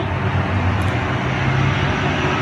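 A steady low engine hum and rumble in the background, with no distinct knocks or clicks.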